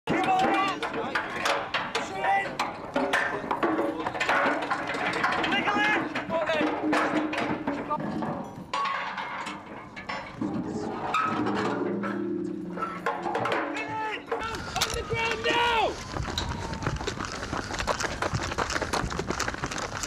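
Indistinct voices with repeated knocks and clatter of work in a military camp, and a steady low hum for a few seconds around the middle.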